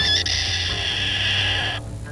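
Domestic chicken giving its aerial predator alarm call, the call it makes for a hawk overhead: one long, high call, steady in pitch, that cuts off shortly before the end.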